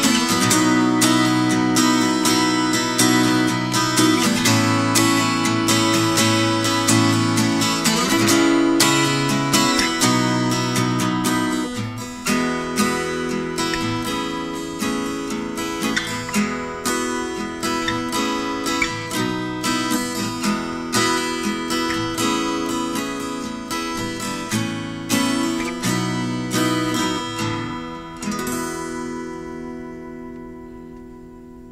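Martin 00-15M all-solid-mahogany acoustic guitar being played, with plucked notes and strummed chords. It is louder in the first part and softer later, and a last chord rings out and fades near the end.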